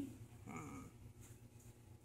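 Near silence: room tone, with one faint, short murmur about half a second in.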